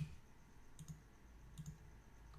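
Faint computer mouse button clicks: a sharper click at the start, then two quick double clicks, the first just under a second in and the second near the end.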